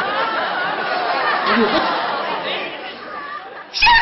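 Indistinct chatter of several people talking over one another, with a louder voice breaking in near the end.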